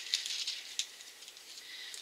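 Plastic packaging of a nail foil set rustling and crinkling in the hands: soft, irregular crackles that thin out toward the end.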